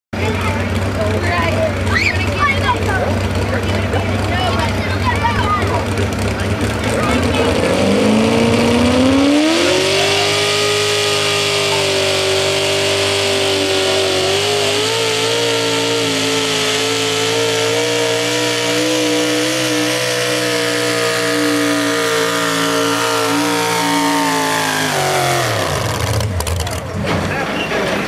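Ford F-250 pulling truck's engine running low at first, then revving hard about a third of the way in and held at high revs for roughly fifteen seconds with a slightly wavering pitch as it drags the weight-transfer sled. The revs drop away sharply near the end as the pull finishes.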